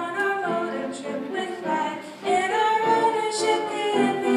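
A girl singing a song, holding one long note about two and a half seconds in.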